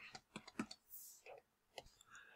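A string of faint, irregular clicks from a stylus tapping on a drawing tablet as handwriting is put down.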